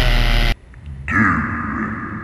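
Loud rock music ending on a held chord that cuts off abruptly about half a second in. After a brief lull, a man's voice starts about a second in, low and drawn out.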